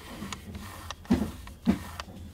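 Handling noise from a Canon EF24mm F2.8 IS USM lens as gloved fingers turn its manual focus ring: soft rubbing with a few light clicks, then two louder, low knocks in the second half.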